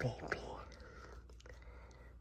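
Soft rustling with a few faint clicks as fingers scratch a cat's fur, just after a spoken word.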